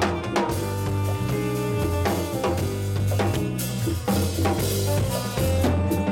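Live band playing, with the drum kit to the fore: kick, snare and cymbal hits over guitar and a steady low bass line.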